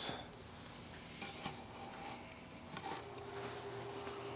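Faint room tone with a few light clicks and knocks, and a faint steady hum that changes pitch about three seconds in.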